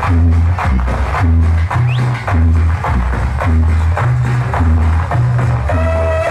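Dance music played loud over a DJ's sound system: a bass line repeating two low notes under a steady percussion beat, with a melody line coming in near the end.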